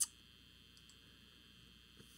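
One short, sharp click at the very start, then near silence: room tone.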